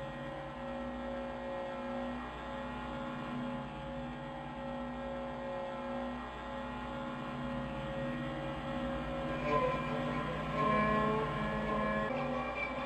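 A steady low hum with a few held tones that swell and fade gently. Fainter higher sounds join about ten seconds in.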